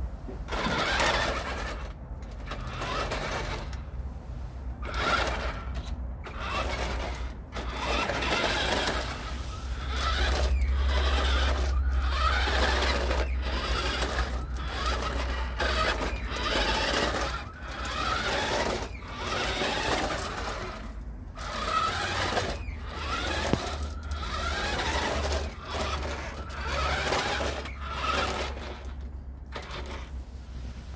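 Land Rover Defender-style RC crawler's small electric motor and gearbox whining in short stop-start bursts as it is driven, with its tyres on brick paving. A low rumble runs underneath, strongest about a third of the way in.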